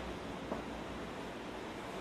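Steady low background hiss with no distinct sound events, apart from one faint soft tap about half a second in.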